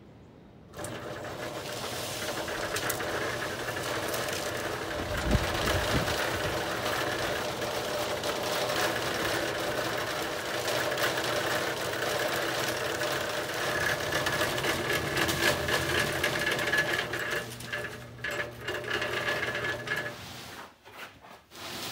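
Small electric cement mixer switched on about a second in, its motor and turning drum then running steadily with a constant whine and low hum.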